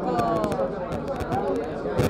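Speech only: people talking, with indistinct voices and chatter.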